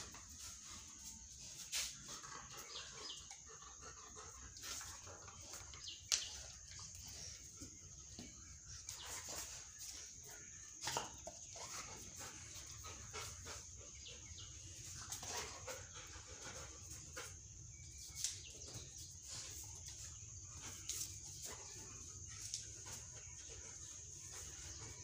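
Labrador dog moving about on a tiled floor: faint scattered clicks and taps over a steady low hiss.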